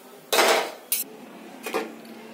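Steel spoon scraping and clinking against a steel pan while stirring a dry mix of roasted coconut, nuts and jaggery: one short scrape, then two brief clinks.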